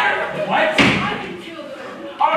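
A stage-set door slamming once, a little under a second in, with actors' voices around it.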